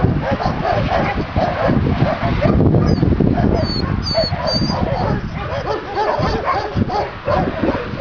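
Several dogs barking and yelping continuously, their calls overlapping into a steady chorus, with a few thin high chirps near the middle.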